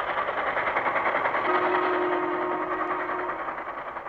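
Narrow-gauge train running along the track with a fast, even clatter. A steady tone sounds over it for about two seconds in the middle.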